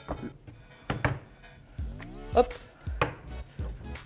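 Rolling pin working puff pastry on a cutting board, with several dull knocks as the pin is set down and rolled across the board.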